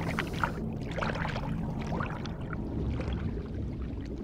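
Water bubbling and gurgling underwater, in short scattered bursts over a low steady hum.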